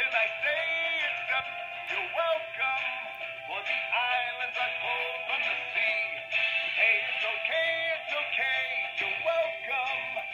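Disney Moana Maui singing doll playing a male voice singing over backing music through its small built-in speaker, thin and tinny with little bass.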